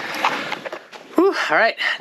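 A person's voice from about a second in, over a rushing noise in the first second.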